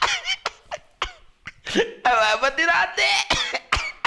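A man's voice: a few short breathy bursts in the first second or so, then a stretch of halting speech.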